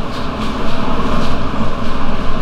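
A loud, steady low rumbling noise that swells about half a second in.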